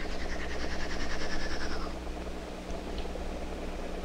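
Small laboratory vacuum pump running with a steady hum, drawing air through a hose and glass thistle tube pressed against a forearm; a hiss of air runs for about the first two seconds and then fades as the skin is pulled into the tube.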